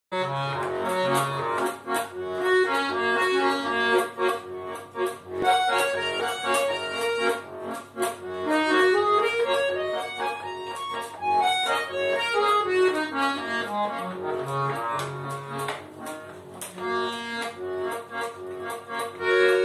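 Bayan (Russian chromatic button accordion) playing a folk-song melody in the right hand over left-hand bass-and-chord accompaniment. A quick run climbs upward about halfway through, and another runs back down a few seconds later.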